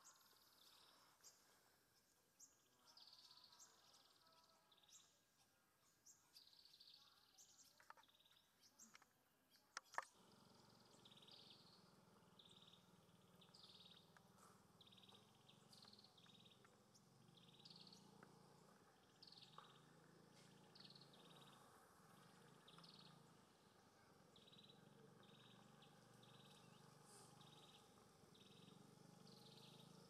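Faint forest ambience: a small animal's short high call repeating roughly every second, with a low steady hum after a cut about ten seconds in.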